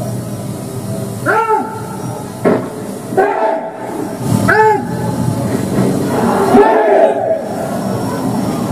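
A squad of Indonesian marines shouting a chant in unison: two long rising-and-falling group shouts, about a second and a half and four and a half seconds in, a sharp knock between them, and a longer massed call near the end.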